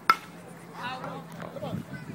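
One sharp, ringing crack of a pitched baseball striking at home plate, about a tenth of a second in, followed by the voices of spectators.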